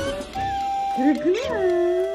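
Background music with long held notes, and a baby's high cooing voice gliding up and back down over it about halfway through.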